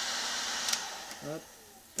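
Ryobi heat gun blowing, a click about two-thirds of a second in, then its fan running down and fading away as it is switched off.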